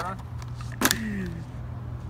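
A single sharp click about a second in as the two halves of a kayak paddle are pushed together and locked, followed by a brief low voice sound.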